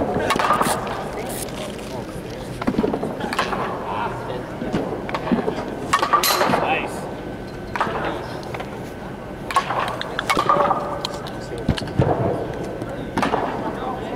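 Slowpitch softball bat hitting pitched balls: sharp cracks a few seconds apart, the first right at the start, with voices in the background.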